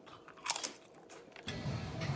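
A crisp tortilla chip bitten and chewed, with a few sharp crunches about half a second in. About 1.5 s in a steadier, louder background with music takes over.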